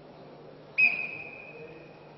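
Referee's whistle blown once on the wrestling mat: a sudden, loud, shrill blast about a second in that holds one pitch and fades away over the next second.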